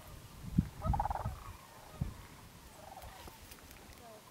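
Sandhill cranes calling from a large flock: one clear call about a second in and a fainter one near the end of the third second. A few low thumps stand out as the loudest sounds.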